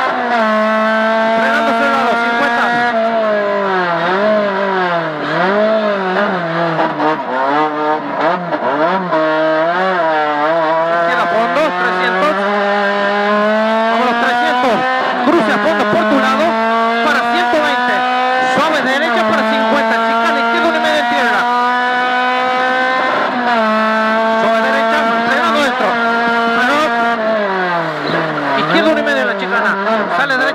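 Rally car engine heard from inside the cockpit under hard driving. The revs climb steadily and then fall sharply at each upshift, and several stretches of falling, wavering revs mark lifting off and downshifting through corners.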